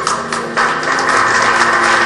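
Audience applause: scattered claps that swell into steady clapping about half a second in.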